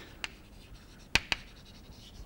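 Chalk writing on a blackboard: faint scratching strokes with a few sharp taps of the chalk against the board, the two loudest close together a little past a second in.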